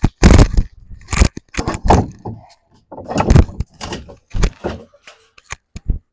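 Irregular knocks, clanks and scrapes as a roll of barbed wire is mounted on a wooden rack, with the iron bar sliding through the roll and the holes in the rack's wooden uprights.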